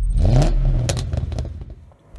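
A car engine revving: its pitch rises sharply in the first half second, then holds and fades away, with a few sharp clicks around the middle.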